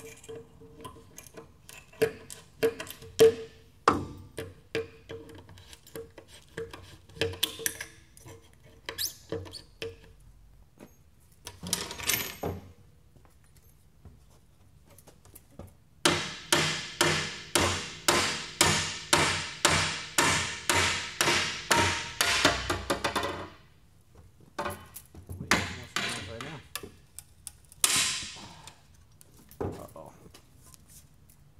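Hammer blows on wooden pallet boards as they are knocked apart. Scattered knocks come first, then a run of quick, even strikes, about three a second, for some seven seconds past the middle, and a few more knocks near the end.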